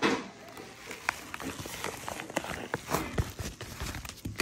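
Paper bubble mailer being handled on a wooden table: a sharp crinkle at the start, then irregular crackling and rustling of the padded envelope.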